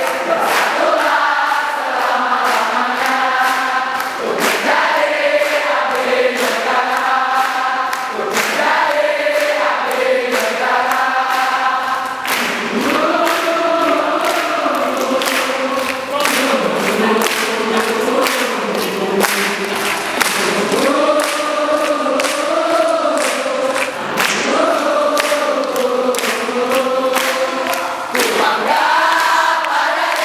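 A large crowd singing a yel-yel cheer song together in unison, with hand claps running through the singing.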